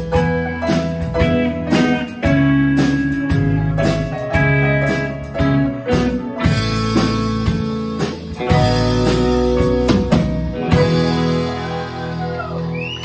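Live country band playing an instrumental passage: electric and acoustic guitars with drums and keyboard, the drum strokes dropping out shortly before the end.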